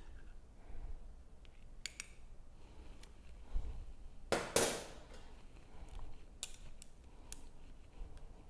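Small clicks and taps of a metal spoon against a glass canning jar as excess salsa is taken out. A little past the middle the spoon is set down on a stainless steel table with a sharp double clatter, the loudest sound. A few lighter clicks follow as a plastic headspace tool is picked up and put into the jar.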